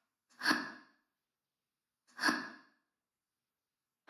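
Two short breathy sighs, each fading over about half a second, the second about a second and a half after the first.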